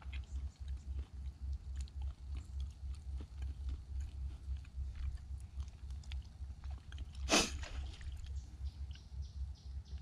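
A man chewing pieces of roasted rabbit meat close to the microphone: soft, irregular mouth clicks over a pulsing low rumble. There is one brief, louder burst about seven seconds in.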